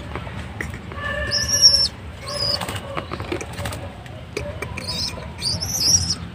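Caged pigeons scuffling, with wings flapping and flicking now and then. A few short, high, squeaky calls come about a second in, again around two and a half seconds, and near the end.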